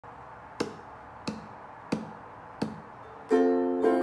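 Four sharp taps, evenly spaced about two thirds of a second apart, counting in, then a ukulele chord strummed a little past three seconds in and struck again just before the end.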